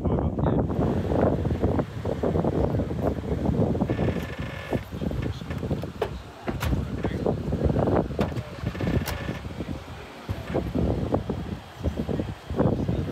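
Wind buffeting the microphone outdoors, with indistinct voices of people talking nearby.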